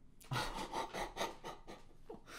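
A man breaking into breathy, mostly voiceless laughter, starting a moment in: quick panting gasps of air, about six a second.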